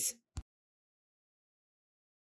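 Complete silence on the sound track after the end of a spoken word, broken only by one brief click shortly after the start.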